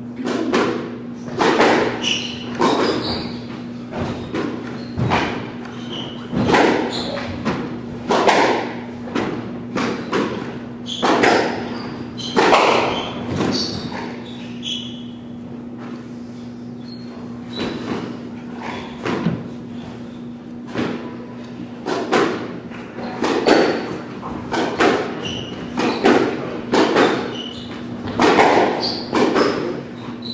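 Squash ball rallies: the ball cracks off racquets and the court walls about once every second or so, ringing in the enclosed court. There is a lull partway through, between points, before play starts again.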